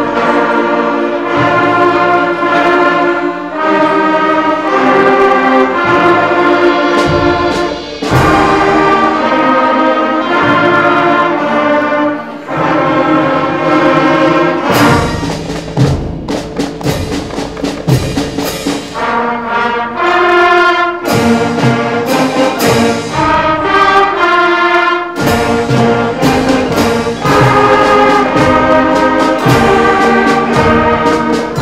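Sixth-grade school concert band of woodwinds, brass and percussion playing a piece: loud, full sustained chords that change every second or two, with drum strikes coming more often in the second half.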